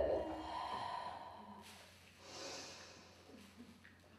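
Music dying away over the first second, then a faint breathy exhale or sigh about two seconds in.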